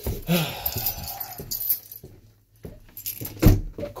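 Small metal pieces jangling for the first couple of seconds, then a single loud thump a little past three seconds in.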